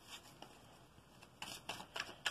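Tarot deck being shuffled by hand: near quiet at first, then a few short card rustles from about a second and a half in.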